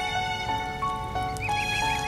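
Background music: a melody of held notes stepping in pitch several times a second, joined by a warbling higher line about a second and a half in.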